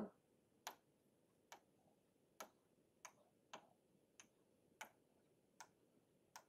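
Faint, sharp clicks at uneven intervals, about eight in all: a stylus tip tapping on a tablet screen while picking a pen colour and starting to write.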